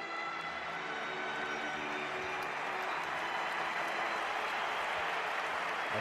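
Slow, sustained tribute music fading out over the first two seconds or so as a packed stadium crowd's applause swells, the applause that closes a minute's tribute.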